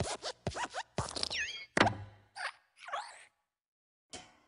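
Cartoon sound effects of the Pixar Luxo Jr. desk lamp hopping on the letter I and squashing it. Quick springy squeaks and thumps with a few gliding squeaks, the loudest thud a little under two seconds in, followed by two shorter sounds.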